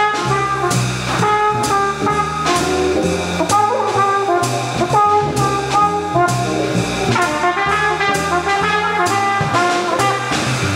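Jazz blues on trumpet and valve trombone, played in turn by one player who switches from trumpet to trombone partway through and back to trumpet near the end, over a walking double bass and drum kit.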